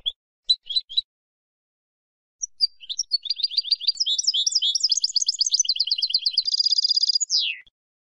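Female European goldfinch chattering: a few short, high call notes in the first second, then after a pause a fast twitter of quick repeated notes. It ends in a buzzy trill and one falling note near the end.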